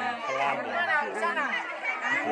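Indistinct chatter of several young voices talking over one another.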